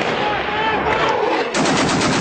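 Automatic machine-gun fire, a dense continuous rattle that settles into a fast, even stream of about nine shots a second in the second half.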